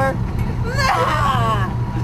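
Boat engine running with a steady low drone, and a person's voice heard over it about half a second in.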